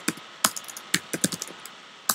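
Typing on a computer keyboard: a run of irregularly spaced keystroke clicks.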